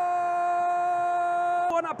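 Football commentator's long drawn-out "Gooool!" goal cry, one voice held on a single steady pitch, breaking off near the end into quick commentary.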